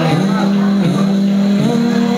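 Live rock band playing, with long held notes that step up and down in pitch a few times.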